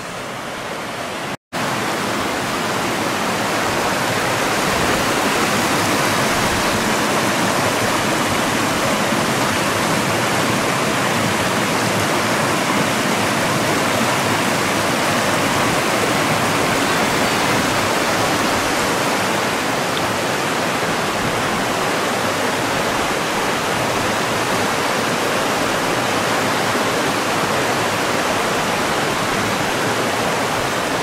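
Creek water cascading in whitewater over rock ledges: a steady rush of falling water. It cuts out for an instant about a second and a half in, then swells slightly and holds steady.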